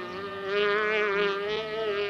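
Cartoon fly-buzz sound effect: one steady, slightly wavering buzz from the purple fly.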